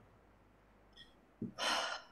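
Near silence, then a short audible breath, a gasp-like intake of air into a microphone, in the last half-second.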